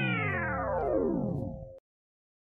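A pitched sound effect with a bright, many-overtoned tone, sliding steadily down in pitch for nearly two seconds and then cut off sharply.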